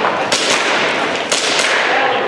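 Airsoft pistol shots: two sharp cracks about a second apart, with steady hall noise underneath.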